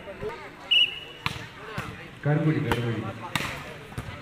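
A referee's whistle gives one short blast about a second in, signalling the serve. A few sharp slaps of hands striking a volleyball follow, with loud shouting from players and spectators.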